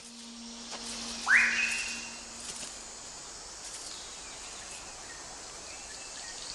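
Rainforest ambience: a steady, shrill drone of insects. About a second in comes one loud whistled bird call that sweeps steeply up in pitch and holds briefly on a high note.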